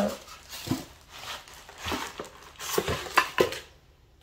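Packaging being handled as a glass pitcher in a plastic bag is lifted out of its box: rustling, with a series of short knocks and clinks, more of them in the second half.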